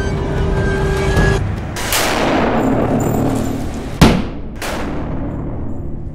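A pyrotechnic blast: a dense rushing burst of noise that builds, then a sharp bang about four seconds in, the loudest moment, and a second crack half a second later, after which the noise dies down.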